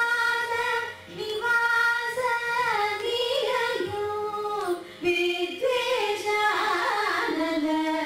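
Two women singing a Carnatic ragamalika together. Long held notes glide between pitches, in phrases that break off briefly about a second in and again around four and five seconds.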